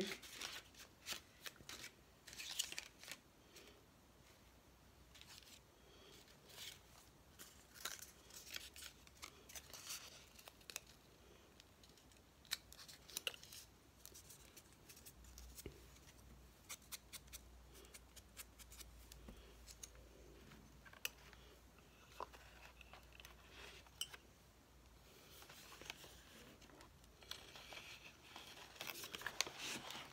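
Quiet paper-crafting sounds: scattered light clicks, scratches and rustles of paper and journal pages being handled, busier near the start and again near the end.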